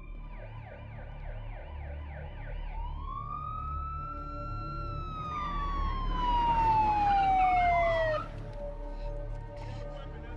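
Police car siren: a fast warbling yelp for the first couple of seconds, then a single wail that rises and slowly falls in pitch before cutting off suddenly about eight seconds in. A rush of noise builds under the falling wail and is loudest just before the cut, over a low rumble.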